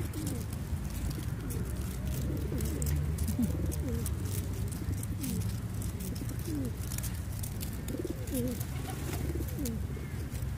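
A flock of feral pigeons cooing, many short low coos overlapping throughout, over a steady low background rumble and scattered faint ticks.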